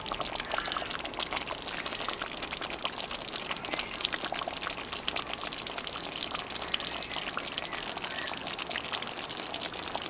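Eddoe curry cooked down to a thick gravy, simmering in a pot: a steady run of many small bubbling pops and crackles.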